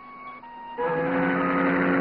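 Soft background music, then about 0.8 s in a ship's whistle sounds a loud, steady low chord, the signal that the ship is leaving.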